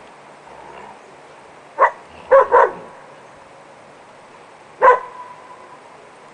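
Dogs giving play barks while tussling over a stick: one bark about two seconds in, two quick barks just after, and a last bark near the end that trails off briefly.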